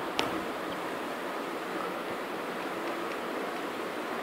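Steady hiss of the recording's background noise, with a single short click a fraction of a second in.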